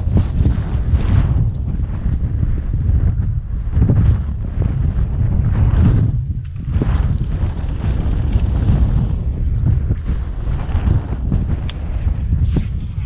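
Wind buffeting the microphone: a loud, low rumble that rises and falls in gusts, easing briefly about six and a half seconds in.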